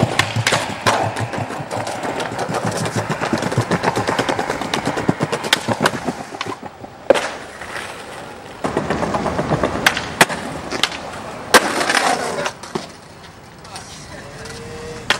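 Skateboard wheels rolling over rough street pavement, with several sharp clacks of boards popping and landing, the loudest about halfway through and again around three-quarters through.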